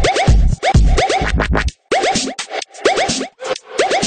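Electronic dance music with turntable scratching: short repeated pitch sweeps over a heavy bass beat. The bass drops out about halfway through, and after a brief break the scratch-like sweeps carry on with little bass under them.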